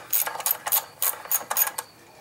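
Ratchet wrench clicking in quick, even strokes, about five clicks a second, as a bolt on the engine is turned with a socket.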